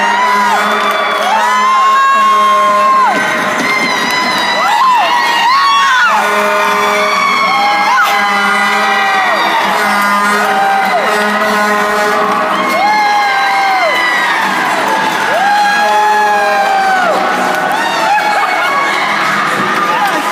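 Crowd of spectators and children cheering and screaming, with many long, high held shouts one after another, the sound of a crowd celebrating a hockey goal.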